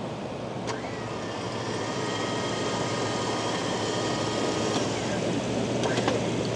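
X-Bull 13500 electric winch running under wireless remote, spooling in its synthetic rope: a pretty quiet motor whine with gear hum. It starts about a second in and stops about a second before the end.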